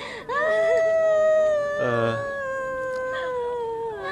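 A woman wailing as she cries: a long, high, drawn-out cry held for over a second, a brief break near the middle, then a second long cry that slowly falls in pitch.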